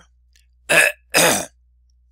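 A man coughs twice, loudly, the two coughs about half a second apart.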